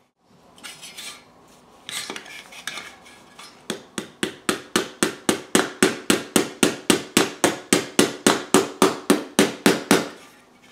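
Quick, even metallic taps on a tin-plate Hornby 0 gauge toy locomotive body, about four a second, starting a few seconds in after some light handling knocks.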